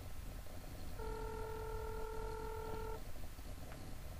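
Telephone ringback tone heard over the line while a call rings unanswered: one steady two-second ring starting about a second in, followed by a faint click.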